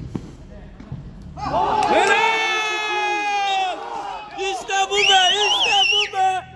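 Men's voices shouting on a football pitch: one long shout held at a steady pitch, then more shouts with a high, wavering yell near the end, the sound of players cheering a goal or a good play.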